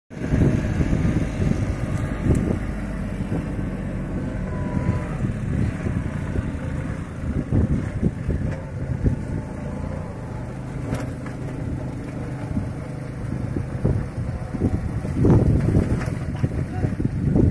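Small farm tractor's engine running steadily under load as it pulls a sugarcane leaf-stripping attachment along the cane rows, growing louder near the end.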